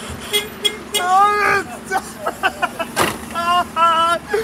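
Refuse collection lorry's engine running with a steady hum while the vehicle stands still, with a few clicks and short, high, pitched sounds over it.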